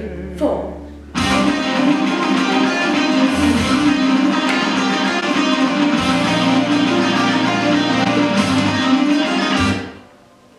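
Loud strummed guitar music with a bass line, coming in suddenly about a second in and cutting off just before the end.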